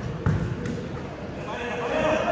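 A basketball bouncing on a hard court as a player dribbles, two sharp bounces in the first half-second, with a voice calling out on court near the end.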